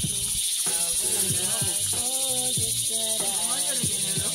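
A steady, high-pitched insect chorus in tropical forest, with a fast, even pulse, and voices talking faintly underneath.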